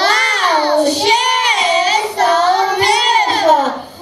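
Young children singing into stage microphones, their voices in long sliding notes, dropping away briefly near the end.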